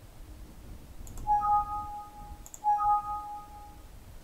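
Windows alert chime sounding twice, about a second and a half apart, each time just after a faint mouse click. Each chime is two steady notes a little apart in pitch, the higher starting a moment after the lower, and marks a warning dialog box popping up.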